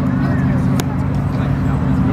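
Hot rod engine idling steadily, an even low running note, with faint voices in the background.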